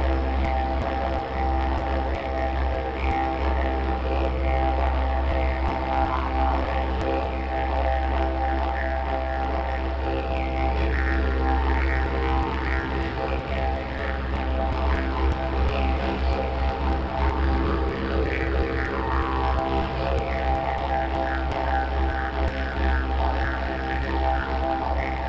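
Plain eucalyptus didgeridoo played as one steady low drone without a break, with its overtones shifting and sweeping up and down above it.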